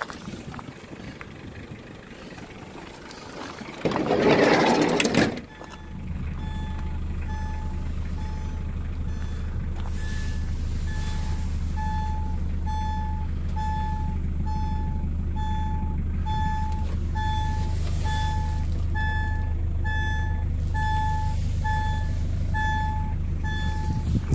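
A brief loud burst of noise about four seconds in, then a vehicle engine idling steadily while a warning beep repeats about one and a half times a second.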